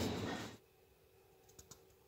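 Supermarket background din that cuts off abruptly about half a second in, followed by near silence with a few faint clicks a second and a half in.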